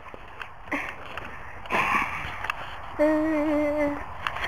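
A few short breathy rustling noises, then about three seconds in a single held vocal call at one steady pitch, lasting about a second.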